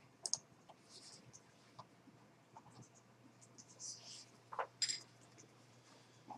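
A few faint, sharp clicks at a computer, one shortly after the start and a pair near the end, over a low steady hum.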